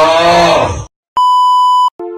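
A man's loud, rough, drawn-out vocal sound that rises in pitch and cuts off just under a second in. After a brief gap comes a single steady electronic beep lasting about three-quarters of a second.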